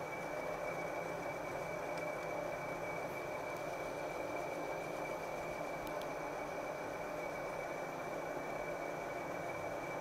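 Vertical milling machine running steadily under power quill feed, its spindle turning a reamer down through a bronze rocker arm bushing, with a constant high whine over the motor's hum.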